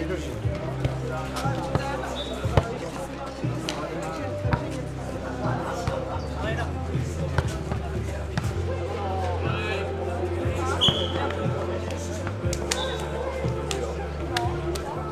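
Nohejbal ball being kicked and bouncing during a rally, a series of sharp, irregularly spaced thuds, with players' voices.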